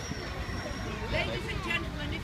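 The Flying Scotsman, an LNER A3 three-cylinder steam locomotive, pulling away into the distance, heard as a low, steady rumble.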